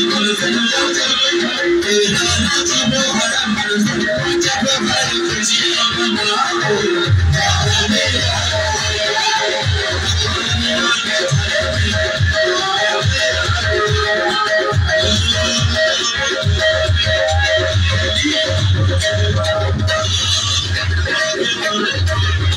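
Live music played loud over a PA system, a short melodic figure repeating over and over. Heavy drumbeats come in about seven seconds in and keep a steady rhythm after that.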